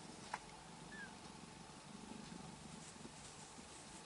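Sphynx cat purring softly. A sharp click sounds about a third of a second in, and a tiny high squeak falling in pitch about a second in.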